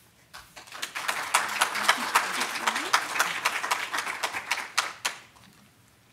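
Audience applauding, starting about half a second in and dying away about five seconds in.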